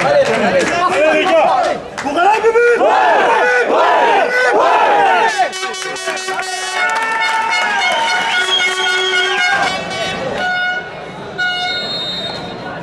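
A football team in a huddle shouting together in a loud rallying cry, many male voices at once. After about five seconds the shouting gives way to a few seconds of steady, held tones that step from pitch to pitch.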